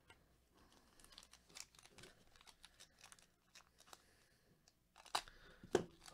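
Foil wrapper of a trading-card pack crinkling and tearing as it is opened by hand: faint scattered crackles, then two sharper crackles near the end.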